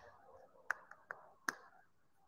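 Four sharp plastic clicks in under a second from a whiteboard marker being fiddled with in the hands, its cap snapping against the barrel.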